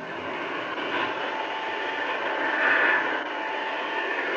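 An electric floor-cleaning machine running steadily: a constant motor noise with a thin steady whine.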